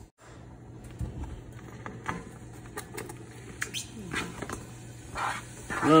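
Cubed bacon being tipped off a plastic cutting mat into a stainless steel pot, with scattered light taps and clicks as the pieces land, over a low steady hum.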